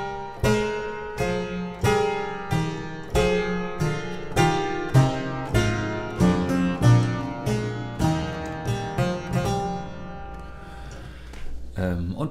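Clavichord playing a slow descending sequence in three voices, parallel thirds over the bass with held notes in the right hand forming a chain of suspensions. The chords come one to two a second, and the last one is held and dies away about ten seconds in.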